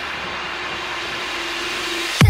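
Background electronic music in a steady, hissing build-up section, with a faint held tone.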